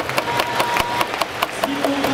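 Scattered sharp claps from spectators in a stadium crowd, irregular and several a second, over a low background murmur. A short steady high tone sounds briefly in the first second.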